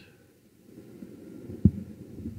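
A single short low thump about one and a half seconds in, over a faint low hum.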